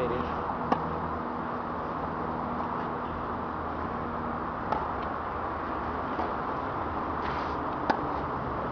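Tennis rackets striking the ball in a rally: sharp pops about a second in, near the middle and just before the end, with fainter ones from the far side of the court in between. They sit over a steady hum of traffic.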